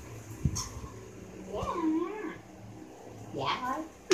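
Two high, wavering whining calls, the first in the middle and the second near the end, with a dull thump about half a second in.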